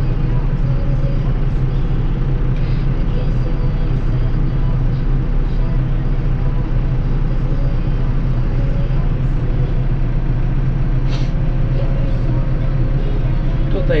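Tractor diesel engine running steadily, heard from inside the cab as a loud, constant low drone.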